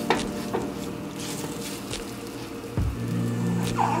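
Plant-based ground-meat mixture sizzling in oil in a nonstick skillet, with a few light clicks and scrapes of a metal fork against the pan and a low thump just before the end.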